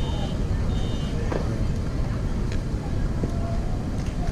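Outdoor ballfield ambience: a steady low rumble with faint, distant voices and a couple of light knocks.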